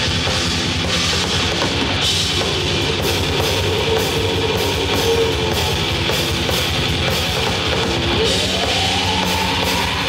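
Live heavy rock band playing an instrumental passage, with no vocals: drum kit, electric guitars and bass guitar at a steady loud level. Near the end a single note glides upward in pitch.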